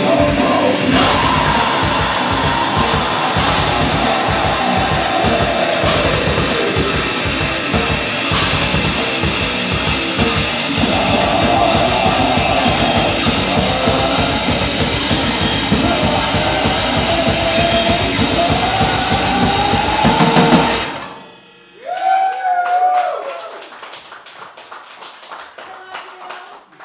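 Live tech-death metal band, electric guitar and drum kit, playing fast with rapid kick-drum strokes, the song ending abruptly about 21 seconds in. A short bent guitar note then rings out and fades.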